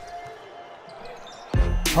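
Faint basketball court sounds with a ball being dribbled on the hardwood. About one and a half seconds in, loud background music with a heavy bass beat cuts in.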